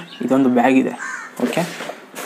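A man talking in short phrases, with a brief harsher sound about a second in.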